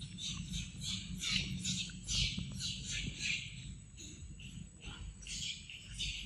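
Macaque chewing and biting a ripe mango, with wet smacking at about three chews a second that slows after about four seconds.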